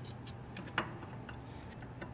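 Faint metallic clicks and ticks from a differential carrier being worked loose by hand inside an aluminum Dana 44A axle housing, one sharper click a little under a second in, over a low steady hum.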